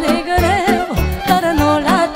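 Instrumental break of a live Romanian folk-pop band: violin and saxophone play a wavering, ornamented melody with vibrato over a steady beat of bass and drums.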